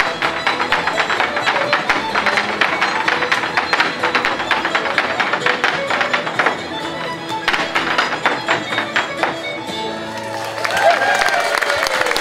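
Irish step dancers' hard shoes rapidly striking a portable wooden dance board, clicking in quick rhythmic runs with brief let-ups, over dance music.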